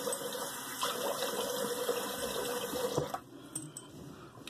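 Cold tap water running into a sink, shut off about three seconds in.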